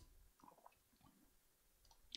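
Near silence: room tone, with a few faint short clicks about half a second in.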